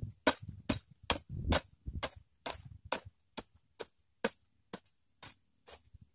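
Hoe (cangkul) blade chopping repeatedly into soil and weeds, about two strokes a second in a steady rhythm. The strokes stop just before the end.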